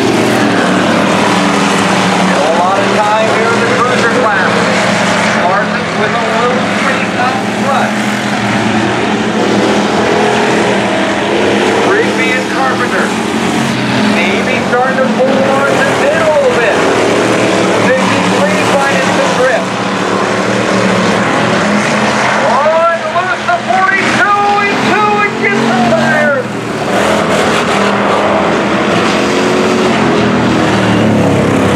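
Race car engines running at speed around a short oval track, loud and continuous, their pitch rising and falling as the cars accelerate down the straights and lift into the turns.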